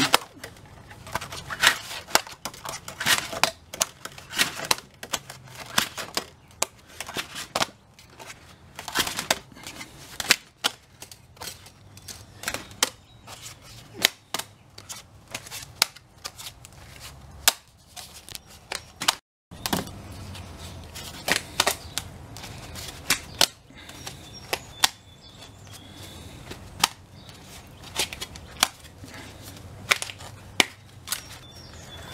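Thin aluminum sheet being bent and snapped by gloved hands into small tags, a few at a time: a run of irregular sharp snaps and clicks, with small metal pieces clicking onto the wooden bench.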